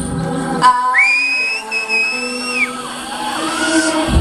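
The band's music stops, its bass cutting out under a thin lingering tone. An audience member then gives a loud two-note whistle: it rises, holds steady for about a second and a half, and falls away. A second, shorter rising-and-falling whistle follows.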